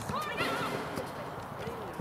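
Voices shouting across a youth football pitch during open play, short raised calls that rise and fall in pitch, with a few short thuds among them.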